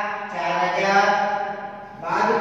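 A man's voice drawing out one long, held syllable at a steady pitch for well over a second, fading away near the end.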